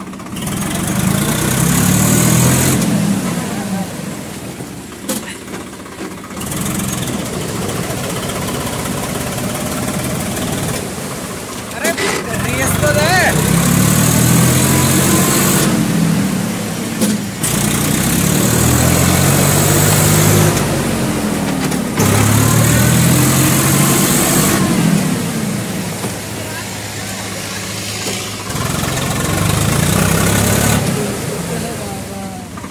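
Swaraj 855 tractor's three-cylinder diesel engine revving up and easing off about five times as it ploughs through river water, with water churning and splashing around the wheels.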